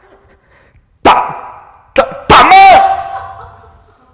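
A man's loud wordless vocal cries: two sudden shouts, then a longer cry whose pitch dips and rises, each ringing on in the hall.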